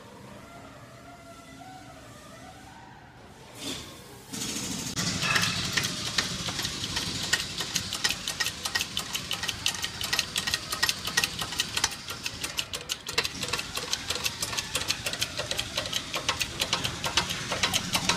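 Harbor Freight shop press working, a rapid steady chatter that starts suddenly about four seconds in, as a tapered roller bearing is pressed onto a Ford 9-inch pinion gear shaft. Before it there is only a faint hum and a soft bump.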